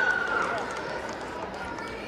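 Crowd of spectators in a large hall, with one loud shouted voice falling in pitch at the start, then fading into steady background chatter.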